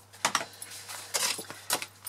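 Backing liner being peeled from double-sided adhesive tape on cardstock, with the card handled: a few short crinkles and rustles.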